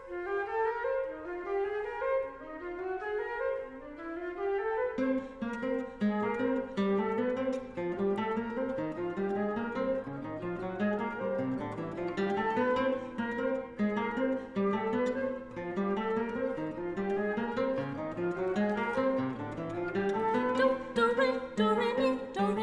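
Classical guitar playing quick, repeated falling runs of plucked notes, with lower notes joining about five seconds in.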